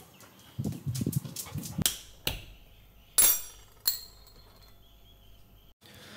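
A dog moving about on a tiled floor: soft low thumps in the first two seconds, then a few sharp clicks, the loudest a bright clink about three seconds in.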